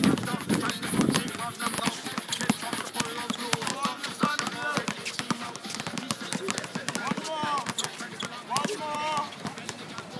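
Several basketballs being dribbled on an outdoor hard court: a dense, irregular patter of bounces, with children's voices calling out now and then.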